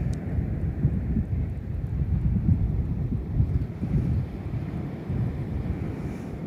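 Wind buffeting the microphone in uneven gusts: a loud low rumble that rises and falls.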